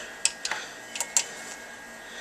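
Front-panel buttons of an Axe-FX Standard being pressed to page through its menus: a few short, sharp clicks, two close together about a second in.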